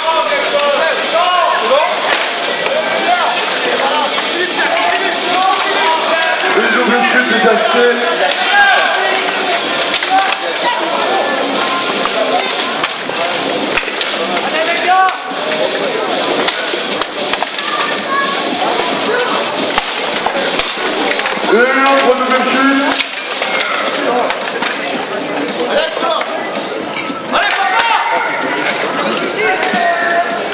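Armoured béhourd melee: weapons and steel plate armour clashing in frequent sharp impacts, with many voices shouting over them, echoing in a large hall.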